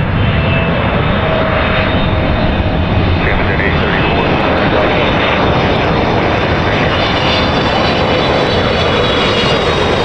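Twin GE90 turbofans of a Boeing 777 freighter on final approach with gear down, a steady, loud jet roar as the aircraft comes close.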